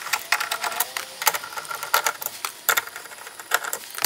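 A hand ratchet clicking in quick, uneven runs as the screws holding a truck's door speaker are backed out.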